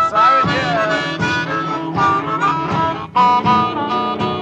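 Blues harmonica solo with bent, wailing notes over a steady band beat in an early Chicago-style blues recording.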